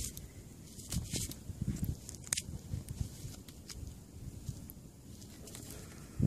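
Soft handling noises close to the microphone: a gloved hand brushing against soil and dry stubble while holding a small metal find, with a few sharp clicks in the first half.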